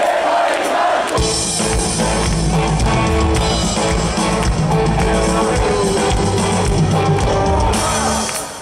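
Live rock band playing loud through a festival PA, with electric guitars, bass and drum kit. The sound is thinner for the first second, then the bass and drums come in heavily.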